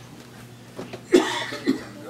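A person coughing: a loud cough about a second in, followed by a shorter second cough.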